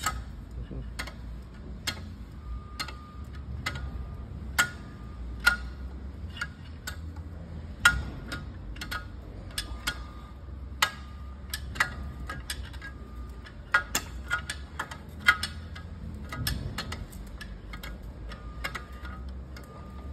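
Maserati engine being turned over slowly by hand, giving irregular sharp clicks and ticks, some with a brief metallic ring, over a low steady hum.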